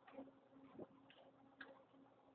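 Near silence: a faint steady low hum with a few soft, irregular ticks.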